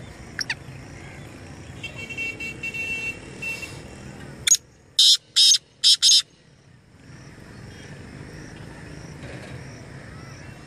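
Black francolin calling: a short sharp note, then a run of four loud, short, high notes in just over a second, about midway through. Before it, a fainter high, pulsing tone and a quick falling chirp.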